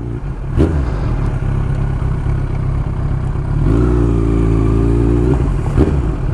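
Yamaha motorcycle engine running at low revs as the bike rolls slowly, with a steadier, higher engine note held for about a second and a half near the end.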